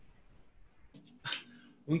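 A pause in a man's speech: quiet room tone, then one short sound from his voice about a second and a quarter in, before he starts speaking again right at the end.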